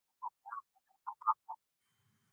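A voice breaking up into short, clipped fragments with dead silence between them, about six in two seconds.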